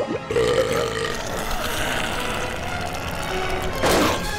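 Cartoon monster sound effect from a giant sea snail monster, over tense background music, with a loud sudden burst near the end.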